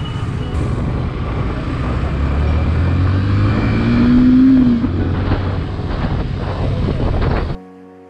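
Yamaha FZ motorcycle engine running under way with road noise, revving up with a rising pitch and then easing off about halfway through. Near the end the sound cuts off abruptly and soft music takes over.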